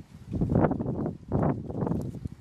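Handling noise from thin plastic seedling cups and loose potting soil being worked by hand during transplanting: irregular rustling and scraping in two clumps about a second apart.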